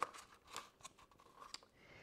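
Faint, scattered clicks and rustles of small paper cups being handled and pressed side by side against a cardboard disc.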